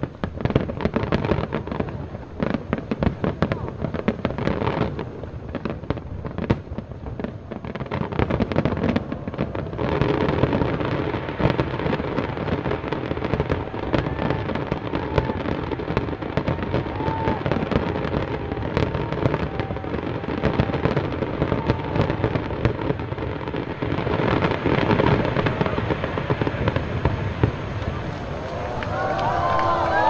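A dense fireworks finale: many shells bursting in rapid succession with crackling, over a continuous rumble. Crowd voices run underneath and rise into cheering near the end as the bursts stop.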